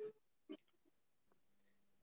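Near silence, broken only by two faint, very short sounds, one at the start and one about half a second in.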